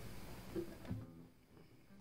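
Faint acoustic guitar string plucks: two soft notes in the first second, then near silence just before the song begins.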